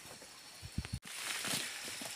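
Footsteps on a forest floor and brushing through undergrowth while walking, with soft low thuds a little past halfway, over a steady high hiss of forest background. The background breaks off abruptly about halfway and comes back louder.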